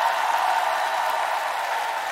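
Studio audience and jury applauding, a steady wash of clapping, with a single held high tone, like a whistle or cheer, sounding above it.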